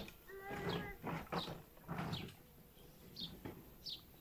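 Faint outdoor sounds: a short distant animal call about half a second in, then a few brief high bird chirps.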